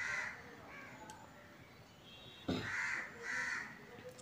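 Crows cawing: a caw at the start, then two louder caws close together a little past halfway.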